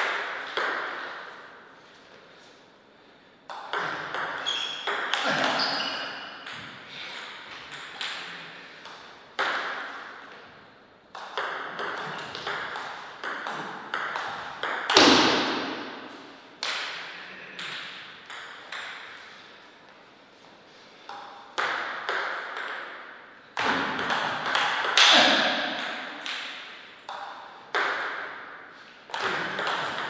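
Table tennis ball being hit back and forth, clicking off the paddles and bouncing on the table in several short rallies, with pauses between points. Each hit leaves a ringing echo from the hall.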